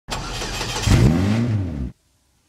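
Car engine revving: a rush of noise, then a single rev whose pitch rises and falls, cut off abruptly near the end.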